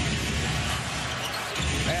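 A basketball being dribbled on a hardwood court, thumping under a steady roar of arena crowd noise.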